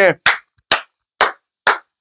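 A man clapping his hands four times, with the claps evenly spaced about half a second apart.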